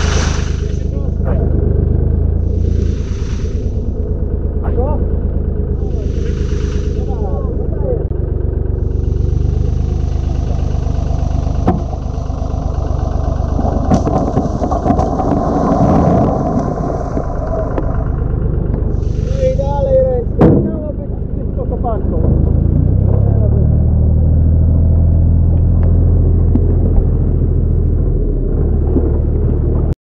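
Small site dumper's engine running steadily, its note shifting in the second half. About midway, a load of limestone rocks is tipped from its skip into the shallow stream, giving a few seconds of rumbling rocks and splashing water. Brief shouts of voices come now and then.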